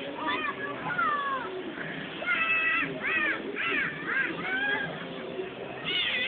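Children's high-pitched shouts and squeals, a string of short calls with one held a little longer, over a background murmur of voices.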